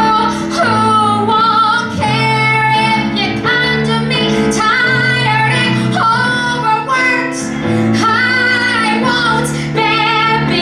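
A woman singing a musical-theatre song with vibrato over instrumental accompaniment.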